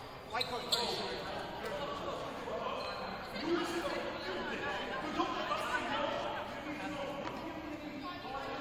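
Players and coaches talking indistinctly over one another in a reverberant school gymnasium during a stoppage in play, with a brief high-pitched squeak about half a second in and a few sharp knocks.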